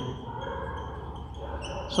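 Felt-tip marker squeaking on a whiteboard as words are written: a few faint, short, high squeaks over a low room hum.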